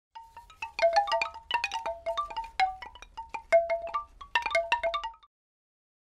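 Opening logo jingle of quick chime-like struck notes ringing over one another in a rapid cascade, like wind chimes. It cuts off abruptly about five seconds in.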